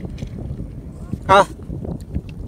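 Wind rumbling on the microphone, a low, uneven buffeting, with a short spoken "Ha" about a second in.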